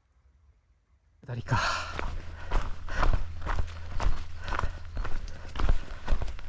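A hiker's footsteps on a mountain trail, about two steps a second, with heavy breathing. They start suddenly about a second in, over a low rumble of wind on the microphone.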